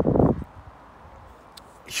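A short burst of noise about half a second long, then faint steady outdoor background; a man's voice starts again near the end.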